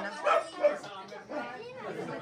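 A small dog barking: a couple of short barks in the first second, among people talking.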